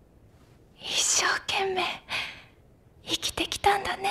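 A young woman's voice speaking softly, close to a whisper, in tearful film dialogue, with several short, quick catching breaths about three seconds in before she speaks again.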